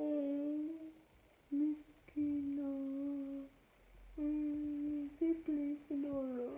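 A man humming a series of steady, low closed-mouth 'mm' notes, about five of them, each held for up to a second or so with short breaks between.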